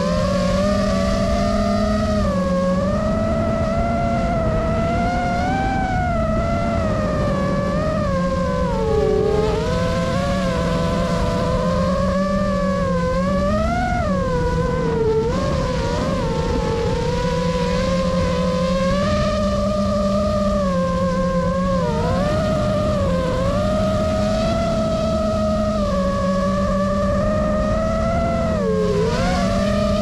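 FPV quadcopter's brushless motors and propellers whining, recorded onboard. The pitch rises and falls constantly with the throttle as it flies, over a rough rush of air.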